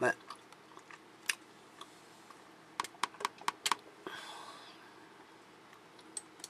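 Computer keyboard keys clicking: a sharp click at the very start, a few single keystrokes, then a quick run of about six keystrokes about three seconds in, followed by a soft brief hiss.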